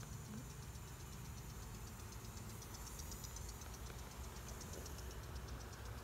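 Steady low hum of honey bees swarming over an open hive frame, with a faint rapid high ticking running alongside.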